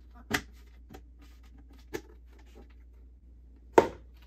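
Snap-on plastic lid being pried off a white plastic fermenting bucket: a few sharp plastic cracks as it is worked loose, the loudest near the end as the lid comes free.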